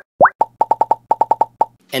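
Cartoon sound effects: two quick pops that rise sharply in pitch, then a rapid run of short pitched ticks, about eight a second, that stops just before two seconds.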